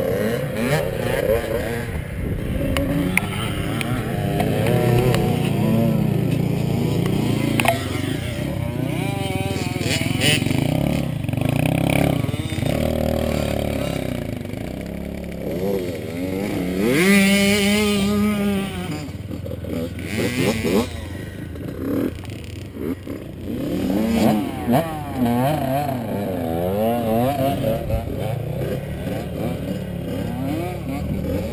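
Several off-road motorcycles and ATVs running, their engines revving up and down. One engine revs loudly close by about 17 seconds in.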